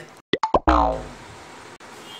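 Comic sound effect edited in at a cut: three or four quick pops, then a louder tone that falls in pitch over about half a second, leaving faint room noise.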